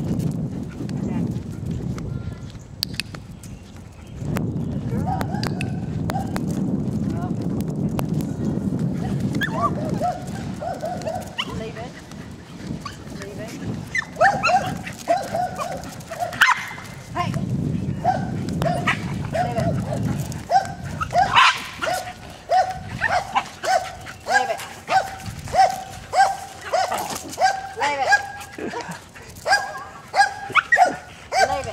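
A dog barking: scattered barks at first, then a steady run of barks about one and a half a second through the second half. A low noise fills the first third before the barking starts.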